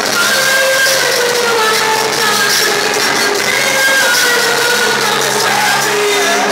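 Live pop concert music at high volume: a woman singing a gliding melody into a microphone over a band and backing track with steady low bass notes, heard from within the crowd.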